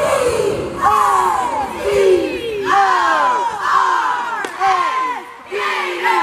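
A cheerleading squad yelling a cheer together in unison: a string of loud, falling-pitched shouts about once a second.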